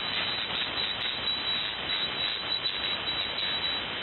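Steady hiss and static of a shortwave single-sideband receiver on the 75-metre band, heard with no voice on frequency, the band noise cut off sharply at the top by the receive filter.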